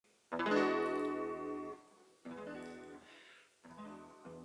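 Classical (nylon-string) acoustic guitar playing the song's introduction: three chords, each ringing a second or so and then damped. The first chord is the loudest.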